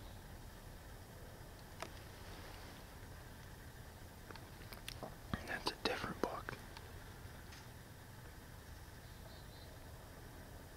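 Brief whispering about halfway through, a burst of short breathy syllables over faint steady background noise, with a single click shortly before.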